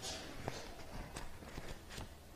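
Faint low room noise with a few soft, scattered clicks and knocks.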